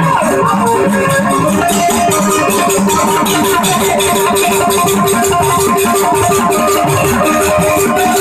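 Loud live band music for a devotional folk song: an instrumental stretch with a quickly repeated melodic figure over drum beats and a steady, fast rattling percussion rhythm.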